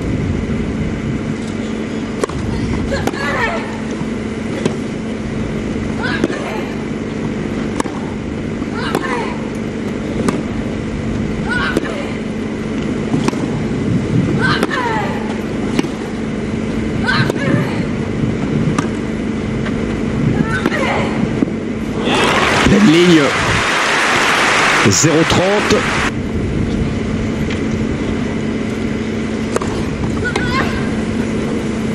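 Tennis rally on grass: about a dozen racket-on-ball strikes roughly a second and a half apart, with vocal grunts on the shots. When the point ends the crowd applauds for about four seconds, and the chair umpire calls the score.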